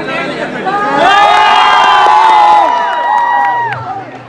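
A crowd cheering and shouting together, many voices holding long calls, swelling about a second in and dying away near the end.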